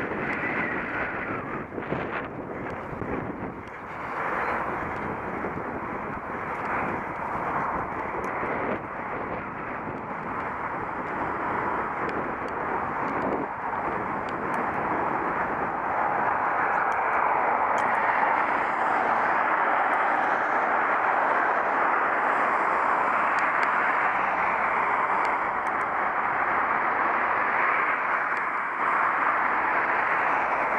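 Steady rushing noise of riding a bicycle on tarmac, heard on the rider's camera: wind over the microphone and tyre roll, louder from about halfway through, with a few brief knocks from bumps in the path.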